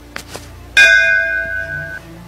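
A bell struck once about three quarters of a second in, loud, ringing with several steady tones and slowly fading before it cuts off abruptly. Two short clicks come just before it.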